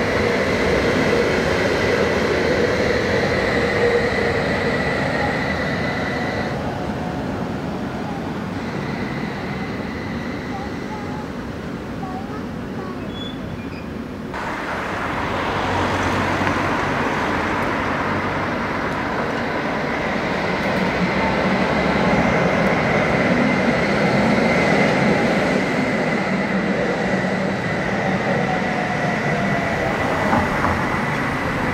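Tatra T3R.PLF tram running on its rails: a steady high whine over the rumble of wheels on track. About halfway through the sound drops off suddenly, then a tram is heard approaching and growing louder.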